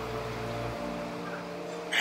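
Soft background music of held, sustained chords under a pause in speech, the chord shifting about a second in.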